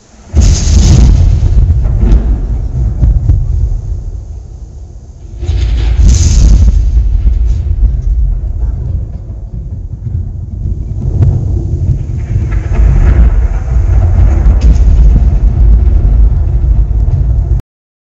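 A very loud, deep rumbling sound effect, starting suddenly, swelling again about five seconds in, and cutting off abruptly near the end.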